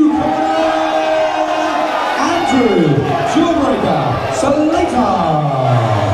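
A ring announcer's voice over a PA system, calling out the winner with a long drawn-out held note, over crowd cheering and whooping.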